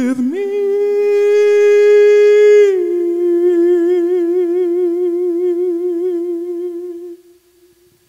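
A solo male voice holds one long wordless note. It glides up onto the note just after the start, steps down a little about three seconds in and goes on with a wide vibrato, then fades out about a second before the end.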